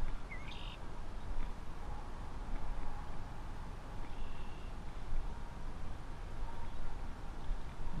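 Steady low rumbling noise of wind on the microphone outdoors, with a short rising bird chirp about half a second in and a brief high whistled bird note about four seconds in.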